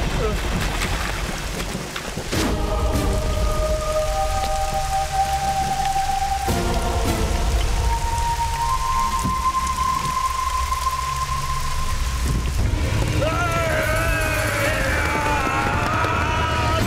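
Steady heavy rain mixed with a dramatic film score. A deep low rumble runs under it all, long held notes come in about two seconds in, and a wavering melody enters about thirteen seconds in.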